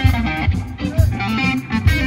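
Live electric blues band playing an instrumental passage: electric guitar lines over bass and drums, with a strong beat about once a second.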